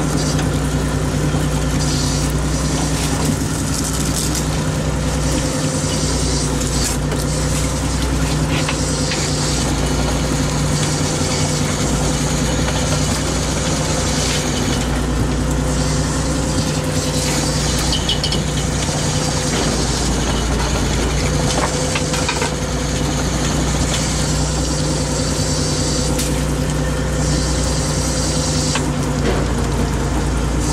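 An inshore fishing boat's engine and net hauler running at a steady drone while a gill net is hauled aboard, with a hiss above it that comes and goes.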